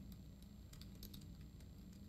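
Faint computer keyboard typing: a scatter of light, irregular key clicks over a low room hum.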